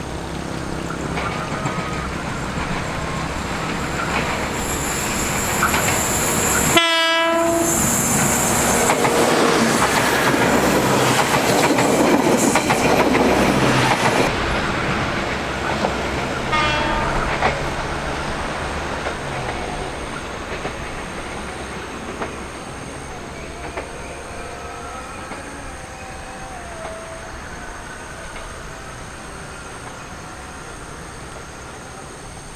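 Special passenger train running past close by, its wheels clattering over the rail joints, with its horn sounding. The sound builds to a peak around the middle and then fades as the train moves away, with a brief cut-out about seven seconds in.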